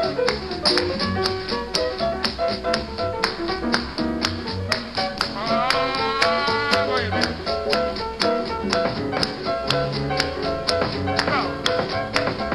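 Jazz quintet of trumpet, piano, guitar, double bass, drums and congas playing a Latin-tinged groove, with regular sharp drum and percussion strokes throughout. A held note slides up about halfway through.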